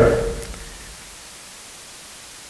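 A pause in a man's talk: his last word dies away in the room's reverberation within the first half second, leaving a steady, even hiss of room tone and recording noise.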